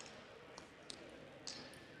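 Faint, scattered knocks of rubber dodgeballs bouncing on a hardwood gym floor, about four in two seconds, in a large echoing gym.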